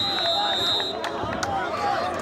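A referee's whistle held in one long steady high note that stops about a second in, over players' shouting voices, with a couple of sharp knocks near the end.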